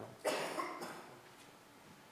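A single cough: one short, noisy burst about a quarter second in that fades within about a second.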